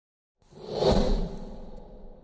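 A whoosh sound effect for an intro logo reveal: it swells in about half a second in, peaks with a low boom underneath around one second, then fades away.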